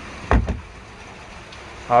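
A single brief low thump about a third of a second in, over quiet background.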